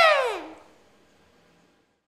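A high-pitched vocal cry falling steeply in pitch, dying away within the first second.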